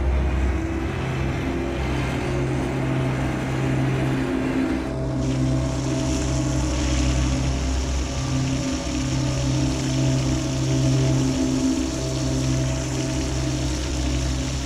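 A crane hoisting a sunken car out of the water: a steady low mechanical hum, joined about five seconds in by the rush of water streaming off the car.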